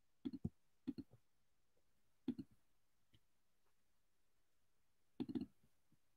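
Computer mouse clicking several times over near silence, in short pairs: three pairs in the first two and a half seconds, then a quick cluster near the end.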